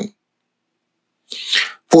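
A moment of dead silence, then a short, sharp intake of breath by a man about a second and a half in, just before his voice resumes.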